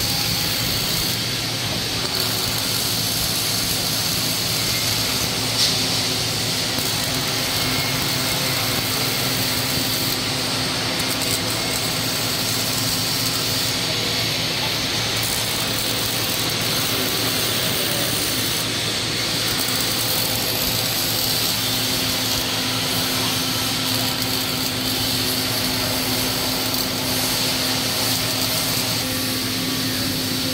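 Robotic MIG welder arc-welding steel parts clamped in a fixture, running steadily for the whole stretch, with a low machine hum underneath.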